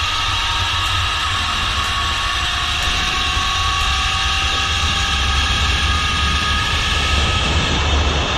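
Zipline trolley running along the steel cable with a steady whine, over wind rushing and rumbling on the microphone.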